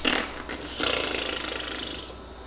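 A woman blowing a raspberry, a breathy buzzing of tongue and lips that swells about a second in and stops near the end, after a short click at the start.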